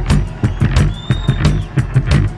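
Live rock band playing an instrumental passage: a driving drum beat of about four strokes a second over a heavy bass line, with no singing.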